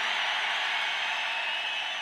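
A large outdoor rally crowd cheering and applauding, a steady wash of many voices and claps that eases slightly toward the end.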